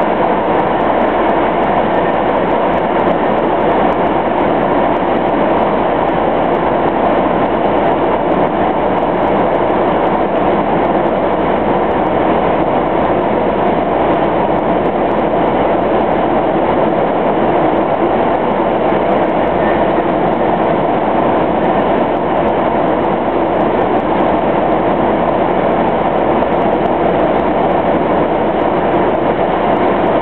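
A truck driving through a road tunnel, heard from inside the cab: a loud, steady mix of engine and tyre noise that stays the same throughout.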